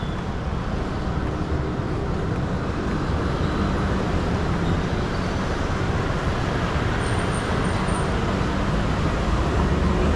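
Steady city street ambience: a continuous hum of road traffic, with no single vehicle standing out, growing slightly louder toward the end.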